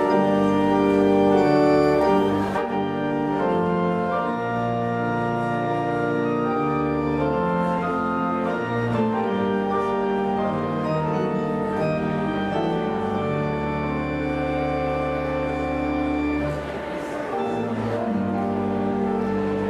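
Rieger pipe organ playing a postlude: full held chords that change every second or two over deep sustained bass notes.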